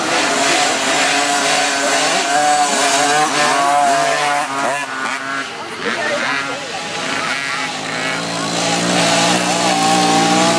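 Mini dirt bike engines revving up and down as the bikes ride the trail, several pitches rising and falling at once. Near the end one bike's engine grows louder as it comes out of the trees.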